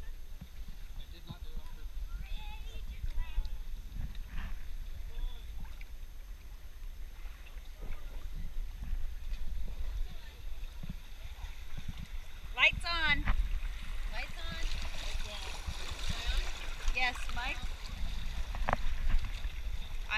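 Shallow stream water running and splashing around inner tubes drifting downstream, with a steady low rumble on the action camera's microphone. People's voices call and laugh off and on, loudest a little past the middle, and the rushing water grows louder in the second half as the tubes ride over a faster, rippled stretch.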